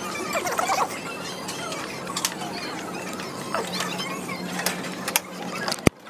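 Scattered short squeaks and small clicks over a steady background hum, with one sharp click near the end.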